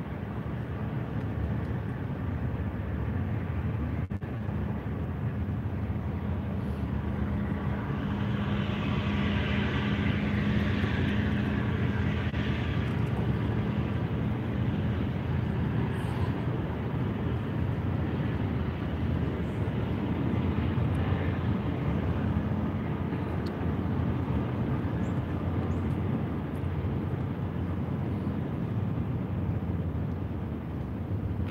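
Steady low engine drone with a hum that holds through the first half, and a higher rushing sound that swells and fades about a third of the way in, like a motor passing by.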